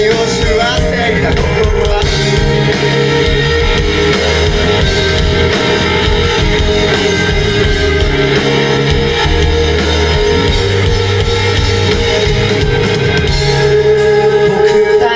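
Live rock band playing loudly, with electric guitars and a drum kit.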